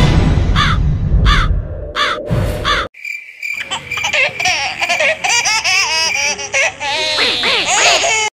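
Loud outro music with short repeated chirps breaks off about three seconds in. After a brief gap comes a squeaky, high-pitched, cartoon-like laughing sound effect with quickly gliding pitch.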